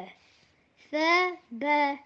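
A child's voice chanting Arabic letter sounds from an Iqra' primer page of ba, ta and tha with fatha: two separate drawn-out syllables, the first about a second in and the second just after it.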